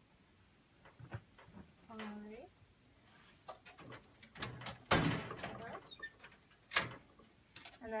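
Hospital bed linens rustling and being handled, broken by several sharp knocks and clatters, the loudest about five seconds in and another just before seven seconds. A brief vocal sound about two seconds in.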